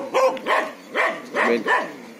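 Dog barking repeatedly, about five short barks in quick succession.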